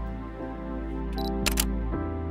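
Background music throughout. Near the end come a short high beep and then a camera shutter firing, heard as a quick double click.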